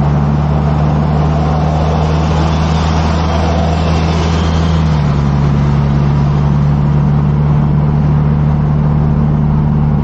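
Classic Ford Cortina cruising at motorway speed, heard from inside the cabin: a steady engine drone under road and wind noise. The engine note shifts slightly about halfway through.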